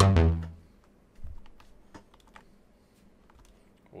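A synthesizer pattern from a Teenage Engineering OP-Z stops and decays away within the first half second. Then come a scattering of faint, short plastic clicks as the OP-Z's buttons are pressed.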